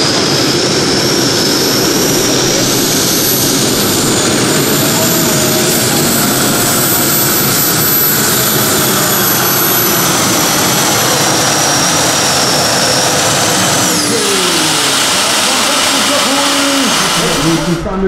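Gas turbine engine of a custom pulling tractor at full power under load, a loud steady rush with a high whine that slowly rises and then sinks. About fourteen seconds in the power comes off and the whine drops away as the turbine spools down.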